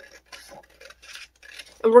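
Scissors snipping through a printed paper sheet in a quick series of short, quiet cuts.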